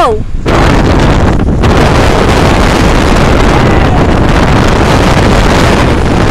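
Wind buffeting a phone microphone: a loud, steady rush of noise that sets in about half a second in, with a brief drop in the hiss about a second and a half in.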